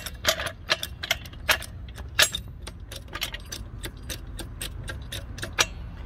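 Torin Big Red 2-ton hydraulic trolley jack being pumped with its handle, its unloaded saddle rising. The pump linkage and handle give a quick, uneven run of sharp metallic clicks and clinks, several a second.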